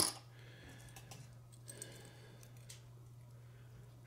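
Faint, scattered clicks and handling noise as hands work a soft-plastic lure and a jig hook, over a steady low hum.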